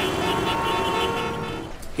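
City traffic: a steady hum of cars and motorbikes with car horns tooting.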